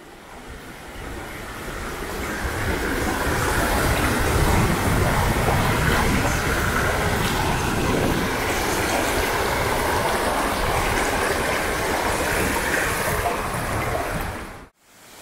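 Shallow stream of clear water running over stones, a steady rushing noise that swells over the first few seconds and then holds, with a low rumble underneath.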